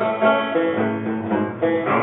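Goldtone Banjitar, a six-string banjo-guitar, playing a laid-back chord accompaniment, with fresh strums about a quarter second in and again near the end.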